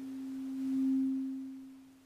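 A single sustained pure tone, low-middle in pitch, that swells to its loudest about a second in and then fades away.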